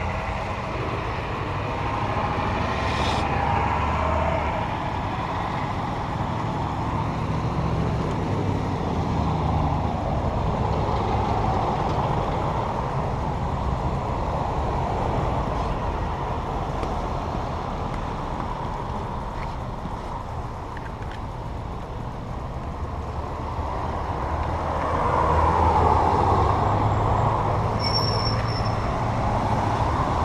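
Street traffic going by: a steady rumble of cars and trucks that swells as vehicles pass, loudest near the end.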